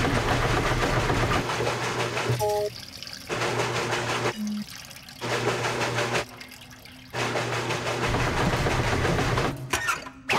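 Cartoon washing machine running a wash, with water churning and sloshing in the drum over a steady motor hum. The churning comes in several runs broken by short pauses.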